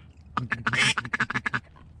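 Duck call blown by a hunter: a quick run of about ten short quacks, one of them longer, beginning about a third of a second in.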